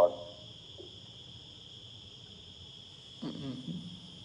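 A steady, high-pitched whine of several thin tones holds unchanged in the background through a pause in speech. A faint, brief voice murmurs a little after three seconds in.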